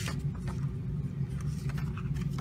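A steady low background hum, with faint rustling and clicking of paper as a thin comic booklet is handled and opened.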